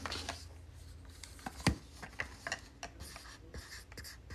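Plastic Mini Brands capsule halves being handled, with light clicks and scrapes and one sharper click a little under halfway through, then a Sharpie marker scratching as it writes on the plastic near the end.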